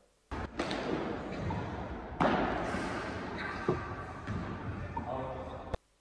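Sound of a padel rally on an indoor court: a steady hall background with a few sharp ball strikes off rackets and walls, the loudest about two seconds in, and faint voices near the end.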